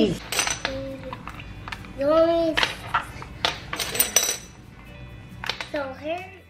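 Sharp clicks and clinks of pink metal planner discs and pages being handled as a disc-bound planner is moved onto larger discs, with a few short wordless vocal sounds between.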